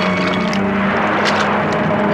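Film score: a steady sustained drone of several held tones, with a rushing swell of noise that rises and fades about halfway through.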